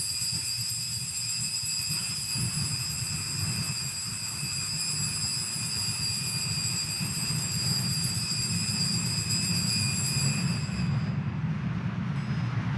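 Altar bells rung without a break in a steady high ringing, over the low rumble of the church, marking the elevation of the chalice at the consecration. The ringing stops about a second before the priest speaks again.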